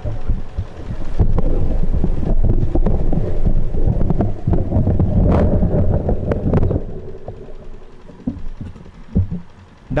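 Microphone handling noise through the PA system: low rumble and a rapid string of thumps and knocks as the stage mic is adjusted, dying down to a few scattered clicks after about seven seconds.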